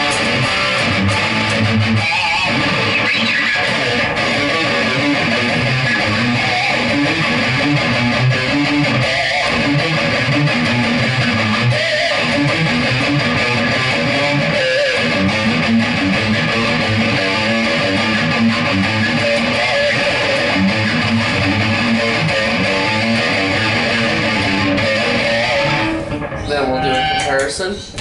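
Gibson Firebird Zero electric guitar played through a Marshall amplifier with an overdrive pedal on, continuous riffing and chords that stop shortly before the end.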